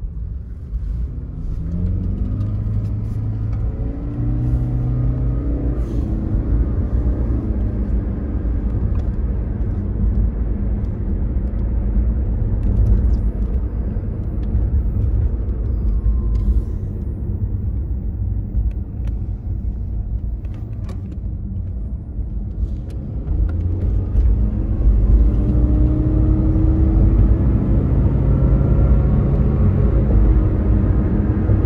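Car engine heard from inside the cabin over a steady low rumble. Its pitch rises as the accelerator is pressed, once a couple of seconds in and again about three quarters of the way through.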